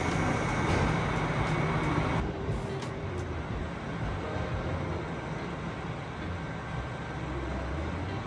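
Trains at an indoor station platform: a steady low running rumble, with a train moving along the platform later on. The sound changes abruptly about two seconds in.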